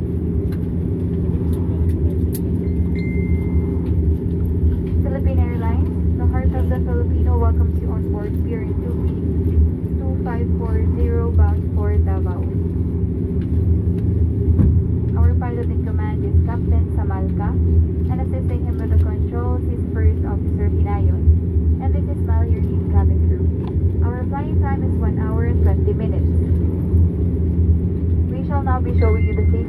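Steady low drone in the cabin of a parked Dash 8-400 turboprop airliner, with voices talking over it. A short high chime sounds about three seconds in.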